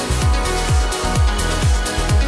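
Progressive house dance music: a four-on-the-floor kick drum hitting a little more than twice a second, with offbeat hi-hats over a steady bassline.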